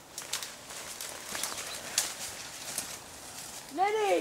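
Twigs snapping and leaves rustling in irregular sharp cracks as someone pushes through undergrowth. Near the end, a voice calls out once in a long rising-then-falling shout.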